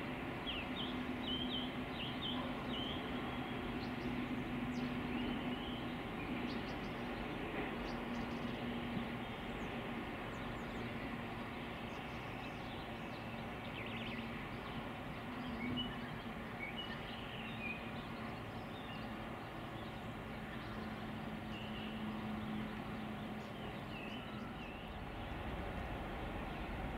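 Class 66 diesel locomotive's two-stroke V12 engine running with a steady low drone as it hauls a freight train of hopper wagons, heard from a distance. Birds chirp briefly throughout.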